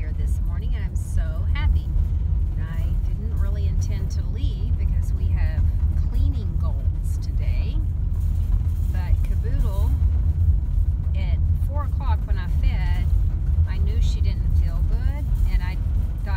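Steady low rumble of a car's engine and tyres on the road, heard from inside the cabin while driving, with a woman talking over it.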